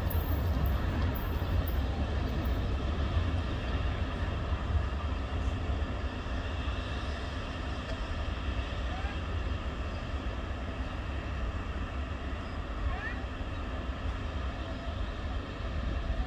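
South African Railways class 18E electric locomotives hauling a passenger train slowly through curves: a steady, deep rolling rumble of the train going by.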